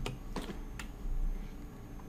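A few light clicks of computer keys, three in the first second, about half a second apart.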